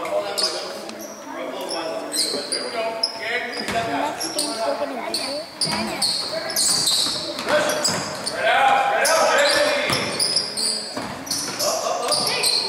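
Youth basketball game sounds in a gym: a basketball bouncing on the hardwood court, sneakers squeaking in short high-pitched chirps, and players and spectators calling out, all echoing in the hall.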